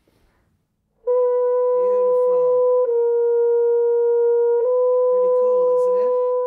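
French horn playing three long, steady held notes joined without a break, starting about a second in. The middle note is slightly lower than the two on either side.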